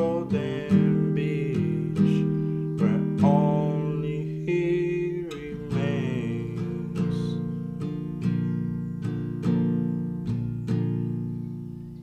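Instrumental passage of a song: acoustic guitar chords plucked and strummed at an even pace, each one ringing out and fading before the next.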